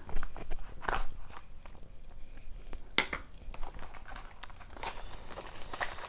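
Plastic shrink wrap crinkling and crackling as it is torn and peeled off a cardboard trading-card box, in scattered sharp crackles.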